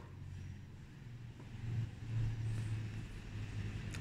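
Low rumble of a passing road vehicle, swelling through the middle and easing off near the end.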